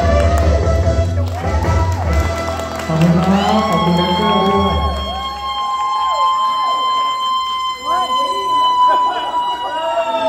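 A singer on a microphone through the PA holds one long, steady high note, while the backing music with its heavy bass cuts out about halfway through. Other voices call out around the held note.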